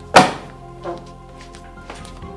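A hard thunk as a book is set down sharply on a wooden table, with a softer knock just under a second later, over background music.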